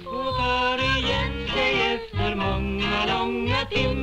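Music: a female vocal trio singing a lively song with band accompaniment.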